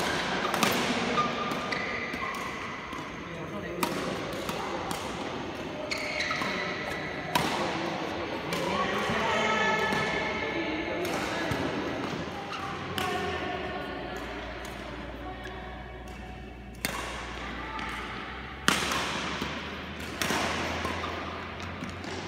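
Badminton rackets striking shuttlecocks and shoes thudding on the court during rallies, in a large echoing hall, with voices chattering in the background. Sharp hits come every second or two, with a few louder cracks near the end.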